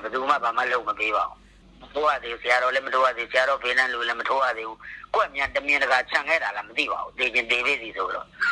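Speech only: a man talking in Burmese, in steady phrases with a couple of brief pauses.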